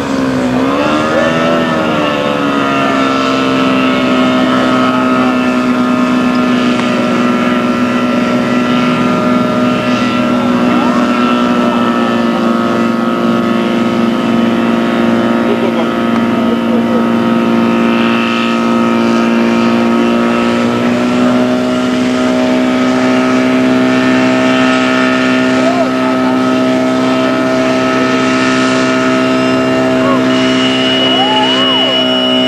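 Portable fire-pump engine running hard, its pitch dipping and swooping back up about a second in, then holding a steady high drone as it pumps water out through the hoses.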